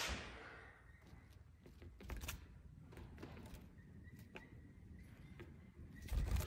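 Quiet room with scattered faint light clicks and taps, one a little louder about two seconds in.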